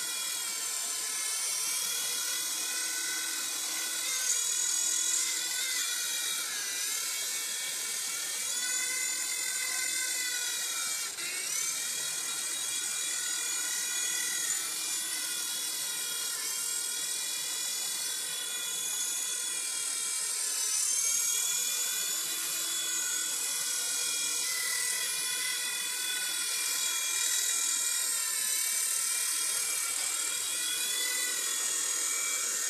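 Mini 4-channel electric RC helicopter flying, its small electric motors and rotor blades making a high-pitched whine. The pitch rises and falls repeatedly as it hovers and moves.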